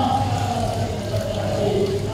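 A male voice chanting in long, drawn-out held notes that shift slowly in pitch, over a steady low hum.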